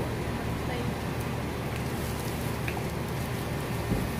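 A steady low hum of background noise, with faint voices now and then.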